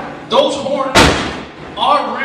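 A wrestler's body hitting the ring mat in one loud slam about a second in, with people shouting just before and after it.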